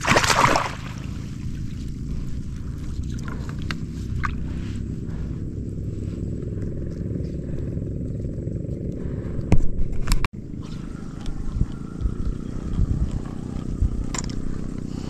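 A small boat engine runs steadily, with the noise of fishing tackle being handled over it: a loud scrape at the start, a few clicks, and a burst of clatter just before ten seconds.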